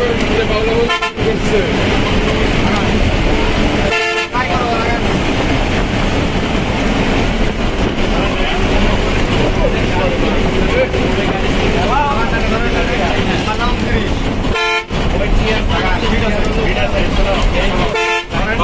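Bus engine and road noise heard from inside the cabin of a fast-moving coach, with vehicle horns honking; one horn is held steadily for several seconds in the middle. The sound drops out briefly three times.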